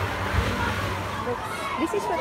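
Background chatter of people's voices mixed with a low rumble, without any clear foreground speech.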